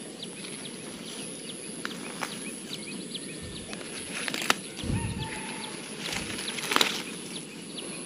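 Small birds chirping in short, quick calls throughout, over a thin steady high tone. A couple of sharp rustling clicks come about four and a half and seven seconds in.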